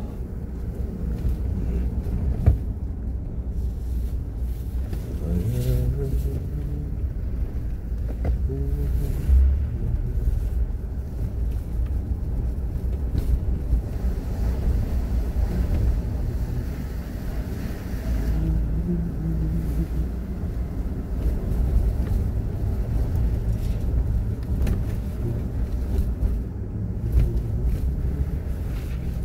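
Car driving along a road, a steady low rumble of engine and road noise.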